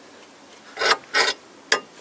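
Two short rasping strokes of a ratchet wrench, then a sharp click, as the tool wedged between the ball joint and the control arm is tightened to force the ball joint apart.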